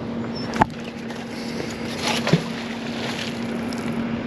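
A fishing magnet on a rope is thrown from the trestle into the water: a sharp click about half a second in, brief rushes around two seconds in as the rope pays out, over a steady low hum and wind. The magnet lands in the water near the end.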